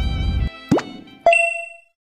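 Background music cuts off half a second in. It is followed by a quick rising 'bloop' sound effect, then a single bright chime that rings out and fades within about half a second.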